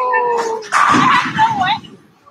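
A woman's high-pitched excited squeals and cheering: a short squeal gliding down in pitch, then a longer, louder one that wavers in pitch near the end.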